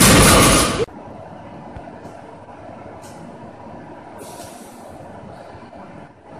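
Heavily loaded barbell with bumper plates dropped to the rubber gym floor after a deadlift: one loud crash that lasts under a second. Quiet room sound follows, with a few faint hisses.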